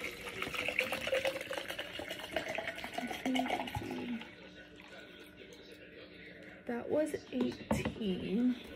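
Water being poured into a measuring cup for about four seconds, its pitch rising as the cup fills.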